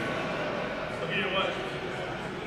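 Indistinct voices of people talking in the background, with one faint voice briefly coming through near the middle.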